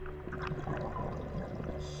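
Faint underwater ambience: a soft bubbling and crackling over a low steady hum.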